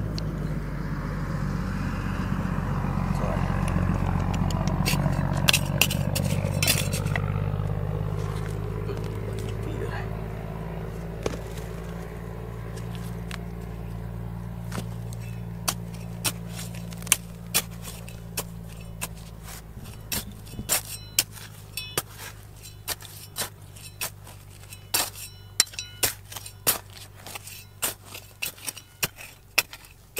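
Steel shovel digging and scraping through dry, rocky soil, with loose stones clicking and clinking against the blade and each other; the clicks grow more frequent in the second half. A steady low hum fades out over the first twenty seconds or so.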